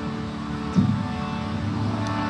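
Harmonium playing sustained chords, a steady reedy drone of held notes, with a brief louder low sound a little under a second in.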